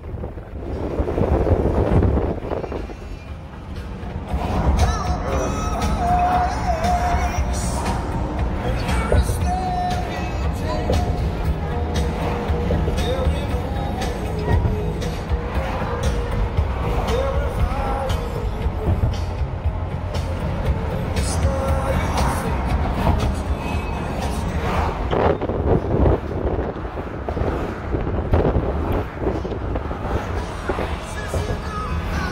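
Steady road and engine rumble inside a moving car's cabin, with music and indistinct voices playing over it.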